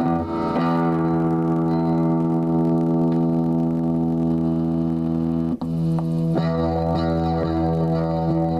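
Electric guitar played through an amplifier with effects: one chord held and left ringing for about five seconds, a brief break, then fresh notes picked over the last couple of seconds.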